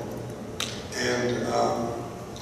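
A man speaking at a lectern microphone, with one sharp click about half a second in before his voice comes back.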